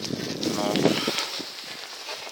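Steady rushing noise of riding a bicycle, picked up by a hand-held phone, with a short spoken "no" about half a second in.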